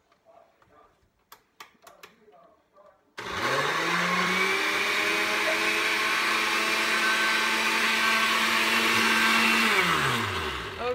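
Oster glass-jar countertop blender. After a few light clicks, the motor starts about three seconds in, spins up within a second and runs steadily at high speed, blending a watery smoothie. Right at the end it begins to wind down as it is switched off.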